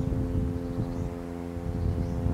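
Uneven low rumble of wind on the microphone over a steady low hum.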